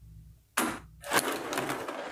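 A nickel-plated .357 Magnum revolver being handled on a wooden tabletop: a sudden knock of metal on wood about half a second in, then a longer scraping, rattling run as the gun moves on the wood.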